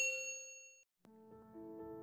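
A single bell-like 'ding' sound effect for the notification bell of a subscribe animation. It strikes sharply and rings out, fading away in under a second. Soft music begins about a second in.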